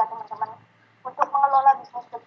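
A person speaking over an online call: a thin, phone-like voice in short runs of syllables with a brief pause in the middle.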